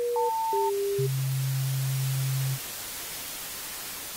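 Synthesized electronic beeps: three short single-pitch tones that jump up and down in pitch, then one long low tone lasting about a second and a half, over a steady static hiss that grows fainter once the tone stops.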